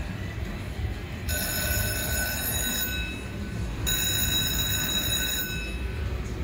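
Slot machine's handpay jackpot bell ringing in two long rings about a second apart: the machine has locked up on a $1,370.26 jackpot that must be paid by an attendant. A steady low hum of casino floor noise runs underneath.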